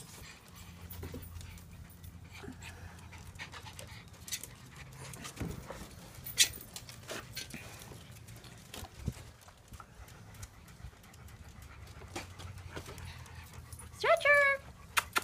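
Dog panting steadily, with a few sharp taps in the middle.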